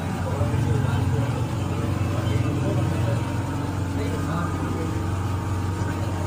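A steady low mechanical hum, with indistinct voices faintly over it.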